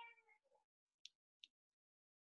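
Near silence, opening with a faint, short, high-pitched call that drops lower as it ends. About a second in come two faint computer-mouse clicks, under half a second apart, as the finished slideshow is closed.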